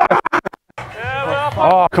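A DJ-style record-scratch edit that chops a voice into rapid stuttered fragments, followed by a voice with sliding pitch over a steady low music bed.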